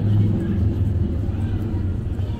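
A steady low mechanical hum, like an engine running close by, with faint voices of passers-by.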